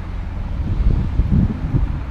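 Wind buffeting the camera's microphone: an uneven low rumble that gets gustier and louder about halfway through.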